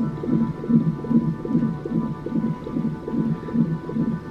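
Fetal heart monitor's ultrasound doppler sounding the baby's heartbeat as rapid whooshing pulses, about three a second.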